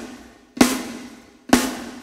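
Recorded snare drum track played back solo with reverb on: two hits about a second apart, each ringing and then dying away.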